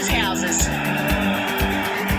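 Background music with a steady, fast beat, and a short sweeping sound just after the start.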